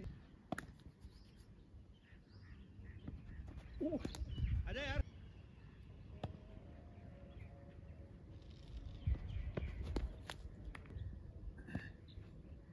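Voices calling out on an open field, loudest in a short wavering shout about four to five seconds in, over a low outdoor rumble.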